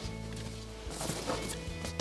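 A large nylon internal-frame backpack being turned around on a wooden bench: a few soft rustles and light knocks of fabric, straps and buckles in the second half, over quiet background music.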